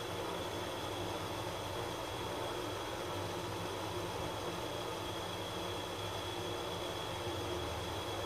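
Steady running hum and hiss heard inside a 1977 Hitachi traction elevator car as it travels upward between floors, with a faint, even high whine over it.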